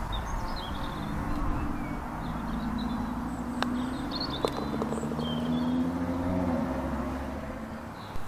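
A putter strikes a golf ball with a short, sharp click about three and a half seconds in, and a second click follows just under a second later as the ball reaches the hole. Under it runs a steady low engine hum that fades toward the end, with scattered bird chirps.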